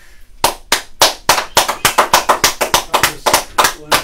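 Hand clapping from a few people, a quick, even run of claps, about four to five a second, starting about half a second in.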